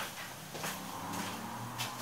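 A man's quiet, drawn-out hesitation sound, a low held 'mmm' or 'uhh', with a faint click at the start and another near the end.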